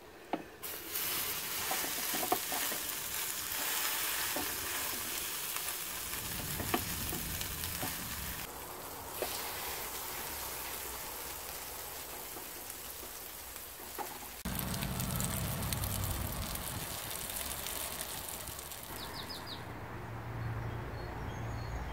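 Zucchini and cheese fritters sizzling in a frying pan as portions of batter are laid in, with a few light ticks and knocks. The sizzle starts about a second in.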